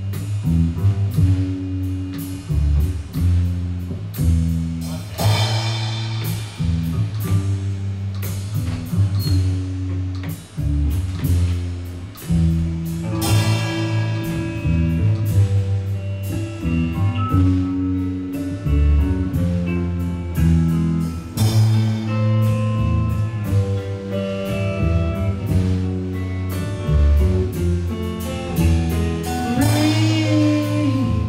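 A band playing live: an acoustic drum kit and an electric guitar, with steady low notes underneath and cymbal crashes about every eight seconds.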